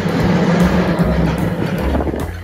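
San Francisco cable car running up its street track: a loud, steady rumble of steel wheels on rails and the cable running in its slot under the street. It is mixed with jazz music, with low bass notes stepping beneath. The rumble drops away right at the end, leaving the music.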